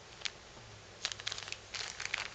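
Clear plastic zip-top bags crinkling as they are handled: a single tick early on, then a run of quick crackles through the second half.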